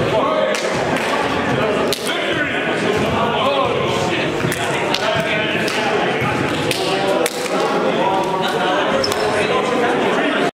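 Several people talking over one another in a gymnasium, with a few sharp knocks scattered through the chatter.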